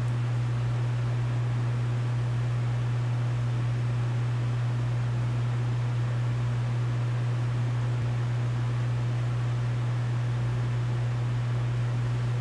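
A steady low hum under a faint even hiss, unchanging throughout.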